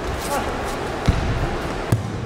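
Two dull thumps of bare feet landing on a gym mat, about a second in and near the end, in a large echoing hall.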